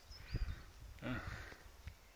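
Two short, faint bird chirps just after the start, over faint outdoor background noise, with a brief low vocal sound from the person filming about a second in.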